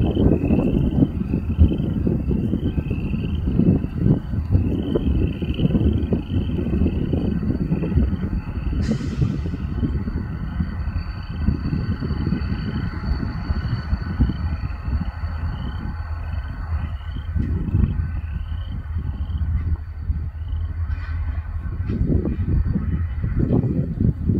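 Diesel locomotive of a slow freight train running toward the listener, a heavy low rumble of its engine and train throughout, with a faint high chirp repeating about every half second over it.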